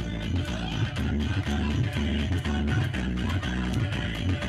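Loud dance music with heavy bass and a steady beat, played over a sound system.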